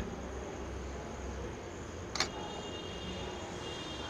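Canon DSLR shutter closing with a single short click about two seconds in, ending an 8-second exposure, over a low steady background hum. Faint steady high tones follow the click.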